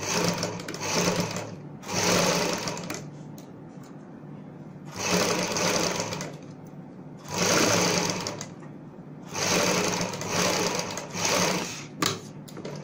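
Sewing machine stitching pearl lace onto fabric with a single-sided presser foot, in about five short runs of a second or two, with pauses as the curved piece is turned.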